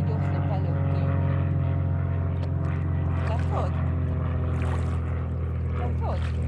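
A steady, unbroken low engine hum from a boat motor on the water, with a few faint gliding voice-like sounds over it.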